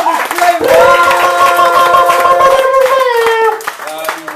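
A small audience clapping and cheering, with one voice holding a long call for about three seconds that drops in pitch at its end. The clapping thins out near the end.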